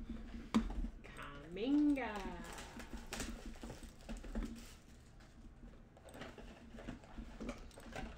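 Trading-card packs and cards being handled, with light rustling and scattered small clicks, and two sharp clicks in the first second.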